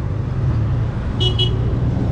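Road traffic, cars and pickups driving past with a steady low rumble, and a short high toot about a second and a quarter in.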